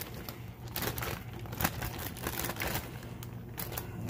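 Irregular crinkling and rustling from a plastic bag of shredded lettuce salad mix being handled as the leaves are tipped into a bowl.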